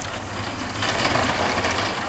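Street traffic: a vehicle engine running with a steady low hum, and road noise swelling up about a second in.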